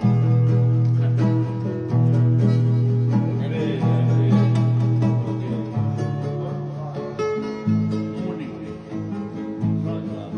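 Acoustic guitars playing a song, with a strong, steady low bass line and chords that change every second or two.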